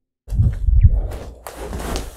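A person shifting about close to the microphone: low thumps and clothing rustle, with a sharp click about one and a half seconds in.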